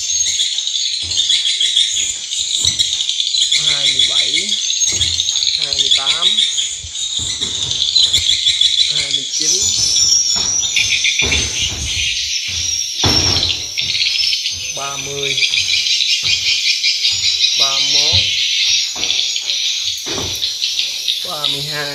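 Swiftlet calls, a dense, high chirping that never lets up, inside a swiftlet house fitted with tweeter speakers that play such calls to lure the birds.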